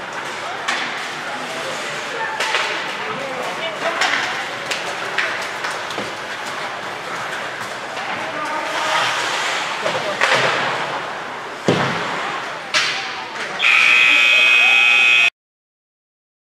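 Ice rink scoreboard buzzer sounding loudly for almost two seconds near the end and cutting off abruptly, marking the end of play. Before it, a murmur of voices in the arena and two sharp knocks about a second apart.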